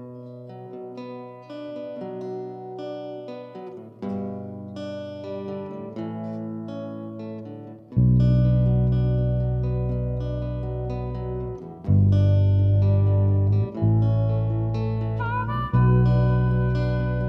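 Acoustic guitar picked note by note as a ballad's intro, slow and unhurried. About halfway through, a much louder deep sustained part comes in, struck again every two seconds or so.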